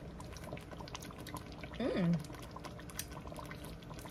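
Thick lasagna soup simmering in a pot on the stove: a quiet, steady run of small irregular bubbling pops.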